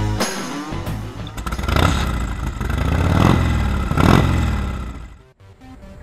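A motorcycle engine that swells to its loudest about three to four seconds in, then fades away, following the last second of a rock-music intro.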